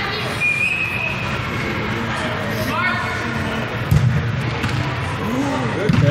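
Voices of players and spectators talking and calling out in an indoor soccer arena, with a sharp thud of a soccer ball being kicked about four seconds in.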